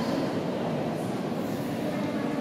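Steady, indistinct murmur of many visitors' voices, a crowd hubbub with no single voice standing out.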